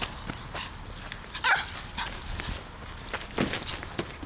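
Small Griffon Bruxellois dog giving a short bark about a second and a half in, amid scuffling and light knocks of paws and ball on dirt.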